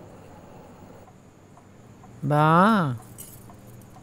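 A person's voice calls out one drawn-out syllable a little over two seconds in, rising and then falling in pitch, over a low steady background hiss.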